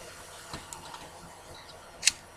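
Faint steady hiss of room tone and microphone noise, with a small click about a quarter of the way in.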